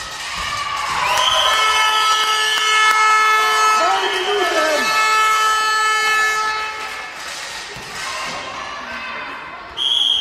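A long horn-like blast of several steady tones sounds from about a second in until about six seconds, over voices in the hall. Just before the end a referee's whistle blows sharply.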